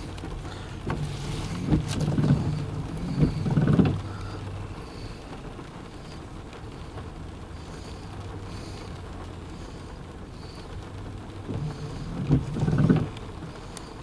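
Rain pattering steadily on a car, with two brief low sounds louder than the rain: one from about two to four seconds in and one near the end.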